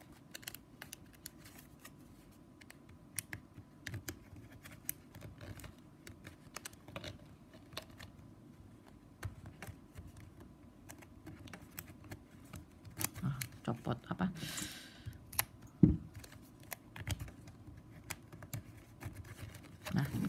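Stiff plastic strapping band clicking and rustling as the strips are handled and tucked through the woven corners of a basket, in many small irregular ticks. About fourteen seconds in comes a short scraping slide as a strip is drawn through the weave, then a sharper click.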